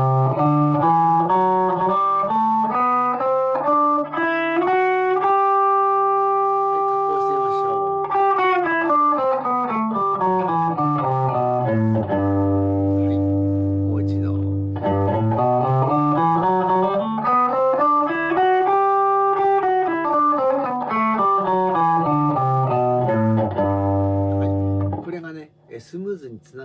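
Fujigen-made Stratocaster electric guitar played through a Zoom G2.1Nu multi-effects pedal on its MB Shock patch. It plays a slow single-note scale exercise from the sixth string, about two notes a second: it climbs about two octaves to a held top note, comes back down to a held low note, then climbs and falls again.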